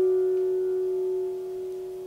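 Alto saxophone with piano holding one long sustained note that fades steadily in a diminuendo and dies away near the end.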